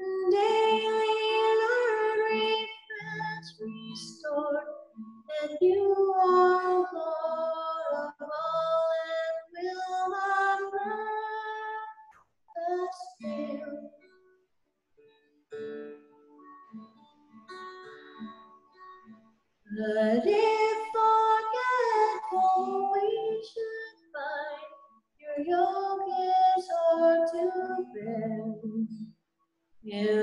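A woman singing a hymn, phrase by phrase with short breaths between lines; the singing thins and softens in the middle and comes back fuller near the end.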